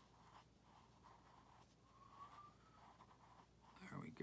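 Faint scratching of a pencil drawing small circles on paper.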